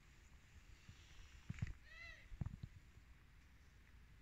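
A domestic cat gives one short, faint meow about two seconds in, its pitch rising then falling, amid a few soft low thumps.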